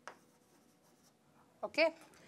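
Stylus tapping and sliding faintly on a glass touchscreen whiteboard as a word is handwritten, with a sharp tap at the start. A single spoken word near the end.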